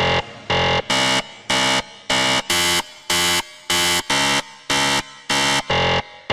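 Electronic countdown-timer beeps: a short, buzzy alarm-like tone repeating evenly about two and a half times a second.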